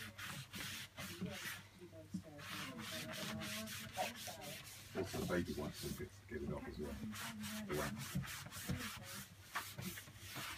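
A cloth rubbing over a freshly waxed, chalk-painted cabinet in repeated short strokes, buffing off the excess wax.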